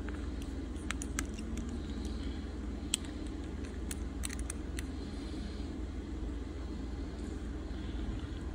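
Metal repair clamps clicking and tapping as they are fitted onto the edges of a phone's glass, a scatter of sharp clicks from about a second in until about five seconds in, over a steady low hum.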